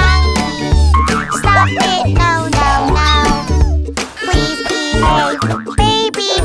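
Children's cartoon music with bass notes, overlaid with springy, gliding sound effects whose pitch slides down and up in the first two seconds.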